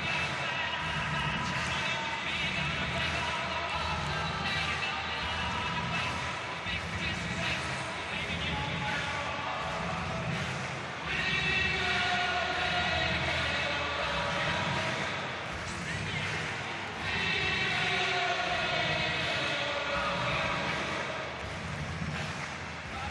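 Stadium crowd noise: a steady hubbub of many voices, swelling louder about halfway through and again a few seconds later.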